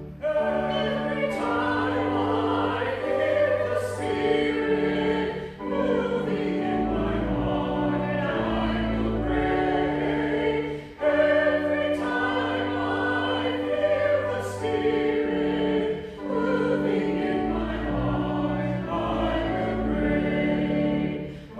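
Church organ accompanying voices singing a hymn, in phrases a few seconds long with short breaths between them.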